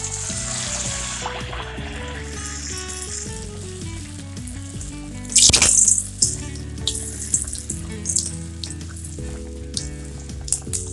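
A puri dropped into piping-hot oil in a steel kadai, sizzling steadily as it deep-fries. About five seconds in, a loud surge of sizzling comes as a slotted spoon works the puri in the oil, followed by scattered crackles. A melodic music track plays throughout.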